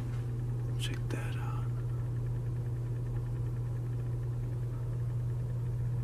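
A faint whispering voice in the background, with two brief hisses about a second in, over a steady low hum.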